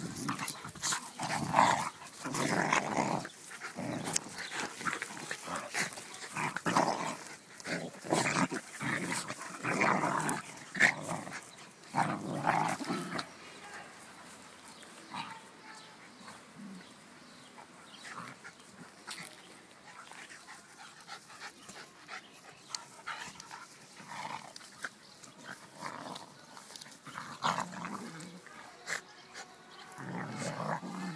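A miniature schnauzer and a beagle play-fighting, growling in repeated bursts, loudest and most frequent during the first half, then quieter with scattered short sounds and a few more growls near the end.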